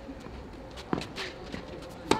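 Tennis ball struck by a racket during a rally: a single sharp crack about a second in, over a faint steady background.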